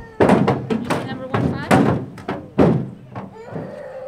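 Young children's voices chattering and calling out, broken by four sharp thunks spread across the first three seconds, with a drawn-out child's call near the end.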